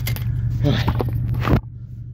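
Phone being handled, with rubbing and scraping that stops suddenly about a second and a half in, over a steady low car engine hum heard from inside the cabin.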